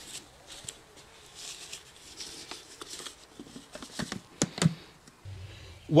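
Faint handling noises from gloved hands working on a motorcycle's air box: light rustling and scattered clicks, with a few sharper clicks about four seconds in. A low steady hum comes in near the end.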